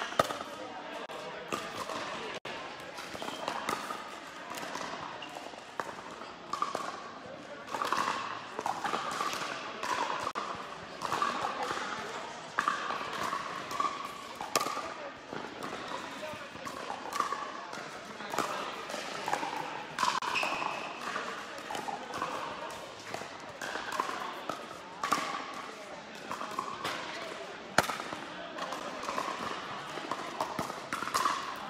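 Pickleball rally: paddles striking the hollow plastic ball, sharp pops at irregular intervals, echoing in a large indoor hall, with players' voices throughout.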